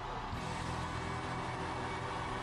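Faint, steady wash of sound from a live TV performance video played at low volume, just after the singer stops singing, with a few faint held tones under it.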